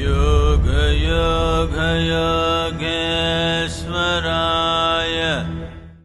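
A chanted mantra sung in long held notes with short breaks between phrases, over a steady low drone, fading out near the end.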